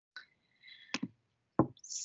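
A faint, brief high tone, then a sharp click about halfway through and a louder knock soon after, while the lecture slide is being advanced.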